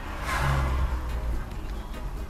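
A car passing close by: a brief swell of engine hum and tyre noise that rises within the first second and fades, over the steady low road rumble of the slow-moving car.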